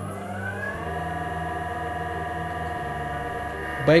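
Electric motor on an Altivar variable speed drive starting after a run order: a whine of several tones rises in pitch as it speeds up, then holds steady.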